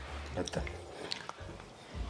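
Quiet, scattered small clicks and mouth sounds of someone eating cured meat at the table, under faint low voices.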